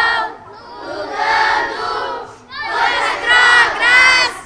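A large group of children singing loudly in unison, in long phrases with short breaks between them.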